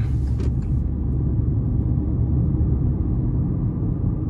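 Steady low rumble of tyre and engine noise inside the cabin of a 2021 Kia Rio LX, with its 1.6-litre non-turbo four-cylinder, cruising along the road.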